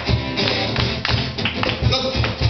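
Live band music: acoustic guitar over a drum kit keeping a steady beat.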